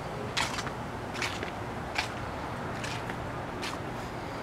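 Footsteps on a brick-paver patio at an even walking pace, about five short steps, over a steady background hiss.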